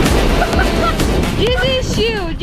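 Water splashing and spray falling back after a belly flop, with wind buffeting the microphone. Excited high-pitched shouting from about a second and a half in.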